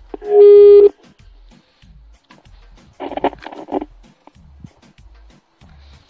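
Walkie-talkie signal played through a car audio amplifier and loudspeaker: one very loud, steady beep of about half a second near the start, then about three seconds in a shorter, quieter burst of noise.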